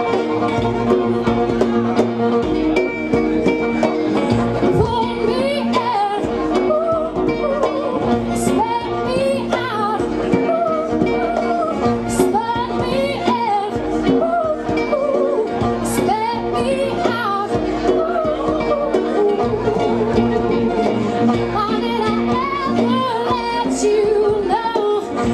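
Acoustic pop song played live by a trio: a violin line over strummed acoustic guitar chords, with a woman singing.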